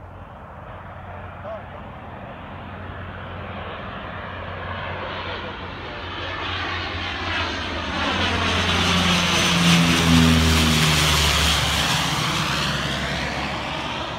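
Fokker C-31A Troopship's twin turboprops passing low overhead: the engine drone and whine grow steadily louder to a peak about ten seconds in, with the propeller tones dropping in pitch as it goes by, then begin to fade.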